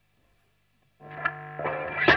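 Near silence, then about halfway through an electric guitar comes in distorted through an Ibanez Tube King TK-999 pedal: a held low note, then a couple more picked notes, growing louder.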